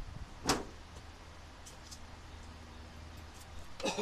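A single sharp knock about half a second in, a few faint clicks, and a quick cluster of knocks near the end, over a faint low rumble.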